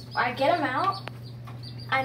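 A child's voice briefly, with chicks peeping in a brooder and a steady low hum underneath; a single click about a second in.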